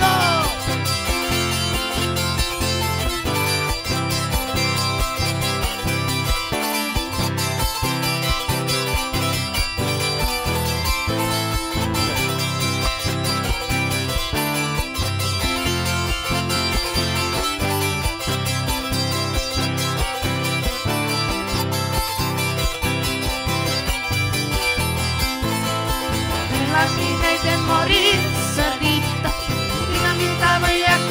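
Live band playing an instrumental passage of dance music: plucked strings over a steady, pulsing bass beat.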